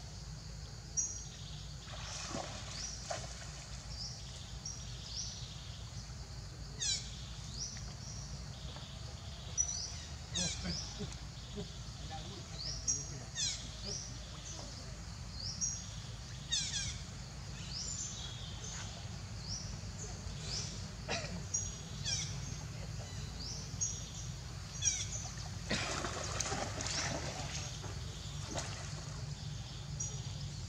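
Birds calling: short high chirps repeat throughout, with a few sharp downward-sweeping calls, over a steady low hum. Near the end there is a stretch of splashing water as a macaque wades through a shallow stream.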